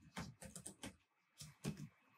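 Faint typing on a computer keyboard: a quick run of keystrokes, a short pause just after the middle, then a few more keys.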